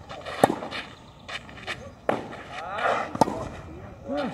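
Tennis balls struck by rackets in a baseline rally on a clay court: sharp pops about half a second in and again just after three seconds, the loudest, with a fainter hit near two seconds.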